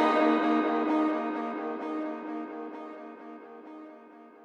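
Background music: a guitar-led passage with no drums or bass, fading out steadily.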